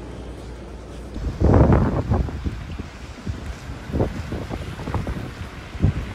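Wind buffeting the microphone in irregular gusts, starting about a second in, the loudest just after it begins; a steady low hum comes before it.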